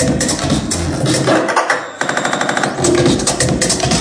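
Minimal techno played loud over a club sound system. About halfway through, the kick and bass drop out briefly, then a rapid stuttering percussion roll runs before the beat comes back in.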